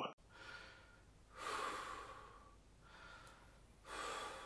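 A man's audible breathing: two soft, breathy exhalations, one about a second and a half in and one near the end, over faint room tone.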